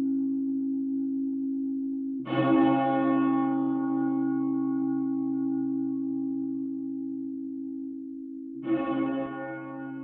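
A deep bell tolling, struck twice, about two seconds in and again near the end. Each stroke rings on and fades slowly over a steady low hum that carries through.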